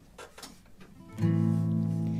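Acoustic guitar: after about a second of quiet, one strummed chord, the song's opening chord, rings out steadily.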